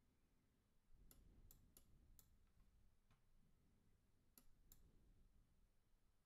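Near silence: faint room tone with about seven soft, sharp clicks, four close together in the first half and a few more past the middle.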